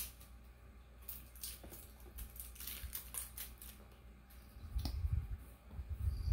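Fingers working open a small plastic lip-oil bottle: a sharp click at the start, then a run of faint scratchy, crackling plastic sounds, and a few dull bumps near the end.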